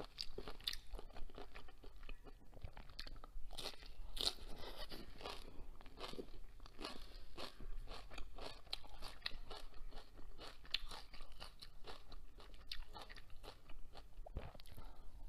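Close-miked chewing and crunching of shrimp with fresh cilantro, an irregular run of sharp clicks several times a second.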